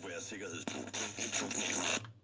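FM broadcast programme audio coming from the loudspeaker of a 1961 Rohde & Schwarz ESM 300 tube VHF monitoring receiver tuned to a station in the 85–108 MHz band, the receiver demodulating FM properly.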